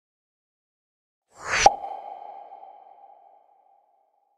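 Logo sting sound effect: a short whoosh that builds to a sharp hit about a second and a half in, followed by a single ringing tone that fades out over about two seconds.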